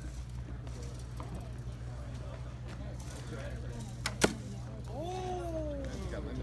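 An arrow shot from a bow: a faint sharp click, then a loud, sharp smack about a fifth of a second later as it strikes the target.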